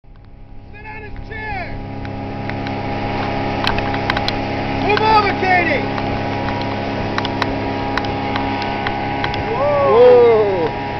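A 125 hp Mercury two-stroke outboard runs steadily at planing speed, pulling a tube, with wind and spray rushing past. The sound grows louder over the first two seconds. Passengers' voices call out briefly about a second in, around five seconds and near the end.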